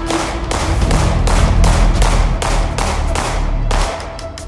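Sig Sauer P320 X-VTAC 9mm pistol fired in rapid succession, about a dozen shots at roughly three a second, stopping abruptly near the end.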